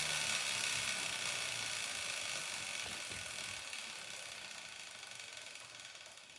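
Motorcycle rear wheel spun by hand on a stand, freewheeling with a steady mechanical whir from its chain and sprocket. The sound starts suddenly with the push and fades steadily as the wheel slows.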